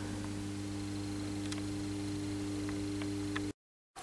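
Steady low electrical hum with a faint hiss and a few faint clicks, cutting off into dead silence shortly before the end.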